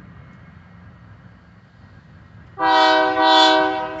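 The lead locomotive's air horn, on ex-Southern Pacific GE C44AC UP 6412 heading a Union Pacific freight, sounds one loud, steady chord of several tones. It starts suddenly near the end, over a faint low rumble from the approaching diesel locomotives.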